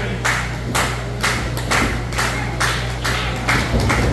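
Hands clapping in a steady rhythm, about two claps a second, over a steady low hum.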